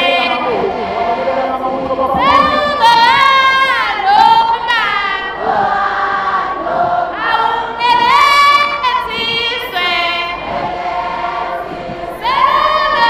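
Many voices singing together in chorus, a song in repeated rising and falling phrases over a crowd's background noise.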